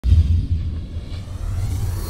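Deep rumbling sound effect of an animated logo intro, starting suddenly and loudest in the first half second, then holding steady as a low rumble.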